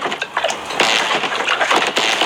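Two people gulping and sputtering water from plastic cups, with gasps, spitting and splashing in a run of sharp, noisy bursts.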